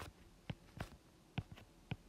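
Several light, sharp taps spaced irregularly: a stylus tip tapping on a tablet's glass screen.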